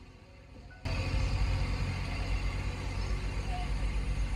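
Quiet background music, then about a second in it cuts to loud outdoor noise with a heavy low rumble that carries on steadily.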